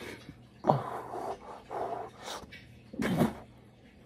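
Pit bull making several short pitched vocal sounds that fall in pitch, loudest about a second in and again about three seconds in, with quieter ones between.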